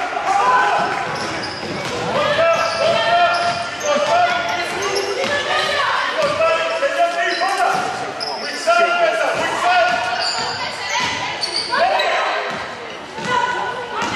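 Indoor basketball game sound in a large, echoing gym: voices calling out across the court, a ball bouncing on the hardwood floor, and shoes squeaking as players run.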